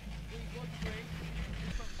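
Steady low hum with a few faint, short voice sounds over it; the hum stops shortly before the end.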